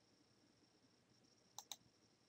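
Near silence, then a computer mouse button double-clicked near the end: two quick, sharp clicks about a tenth of a second apart.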